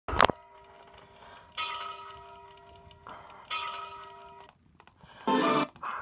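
Music from a YouTube video playing through computer speakers, picked up off the room: a sharp click at the very start, two sustained chime-like chords that fade, then a louder, fuller passage near the end.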